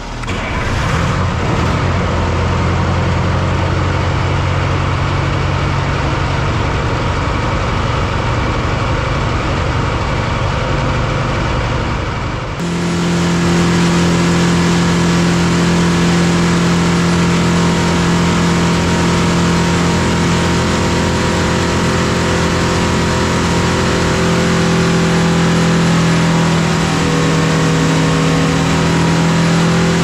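Detroit Diesel 4-53T, a turbocharged four-cylinder two-stroke diesel, running on an engine dynamometer on vegetable oil. It comes in suddenly and runs steadily, then about twelve seconds in steps up abruptly to a louder, higher note and holds there under load. This is a power pull with the water-methanol injection working.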